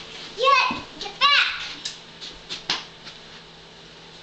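Two short, high-pitched kiai shouts from a young girl doing taekwondo self-defense moves, about half a second and a second and a quarter in, followed by a few light knocks.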